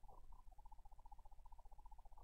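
Near silence: faint room tone with a low hum and a faint, rapidly fluttering high tone in a pause between spoken words.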